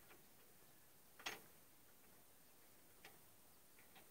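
Near silence with a few faint, sharp clicks, the clearest about a second in.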